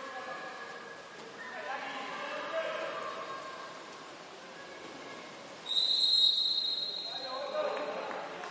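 A referee's whistle blown once in a single steady, shrill blast lasting about a second and a half, a little over two-thirds of the way through.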